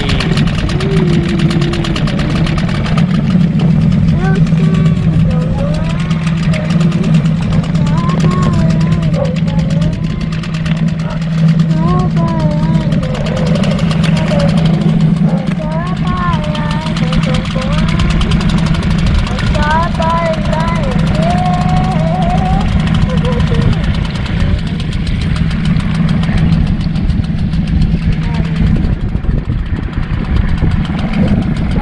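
Small 6 hp outboard motor running steadily at low speed, a constant low hum that drops away near the end. A person sings over it.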